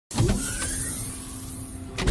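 Logo-reveal sound effect: a loud, steady whoosh with a faint rising tone in it, swelling into a hit at the very end as the logo lands.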